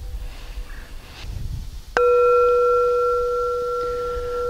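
A black singing bowl struck once with a wooden striker about two seconds in, then ringing on with a strong low tone and several fainter higher tones that slowly fade.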